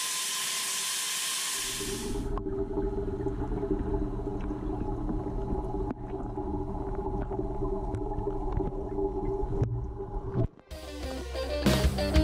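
Water pouring from the inlet and splashing into an empty concrete water tank as a steady hiss for about two seconds, then cut off abruptly. Low droning music follows, and a louder guitar track comes in near the end.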